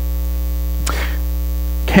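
Steady low electrical mains hum, with one short faint noise about a second in.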